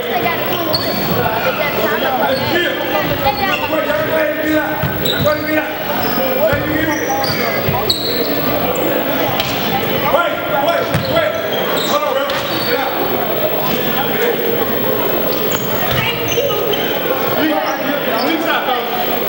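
Basketball game sounds echoing in a large gym: a ball bouncing on the hardwood court, short sneaker squeaks, and the voices of players and spectators throughout.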